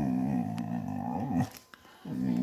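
Basset hound giving a long, low, wavering groan that breaks off about one and a half seconds in.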